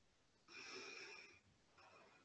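A woman's slow breath, just under a second long, with a faint whistling tone in it, taken while she holds a seated twist; a fainter breath begins near the end.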